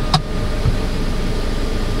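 A click, then a steady whirring hiss as the electric sunshade under a Changan UNI-T's panoramic sunroof slides along; it takes a while to open and close.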